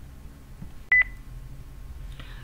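A single short, high electronic beep about a second in, with a click at its start and end, over faint low room hum.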